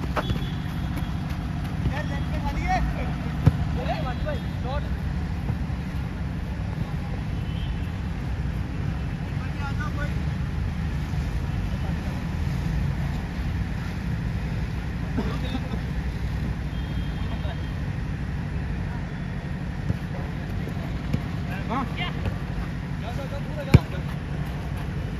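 Steady low rumble on the microphone, with faint shouts of players across a football pitch and a sharp kick of the ball near the end.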